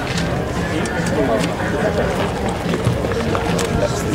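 Indistinct voices with background music playing, and scattered faint clicks.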